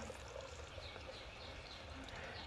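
Faint outdoor ambience: water trickling from a small tiered pot fountain, with a few faint high chirps.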